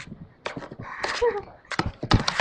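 Background chatter of a crowd of students in a hallway, with a few sharp knocks.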